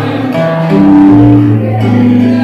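Acoustic guitar playing chords, each chord ringing on before the next one, changing several times.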